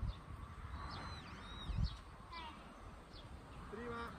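Wild birds chirping and calling, including a run of quick falling chirps a little after two seconds in, over a low rumble that swells briefly just before two seconds.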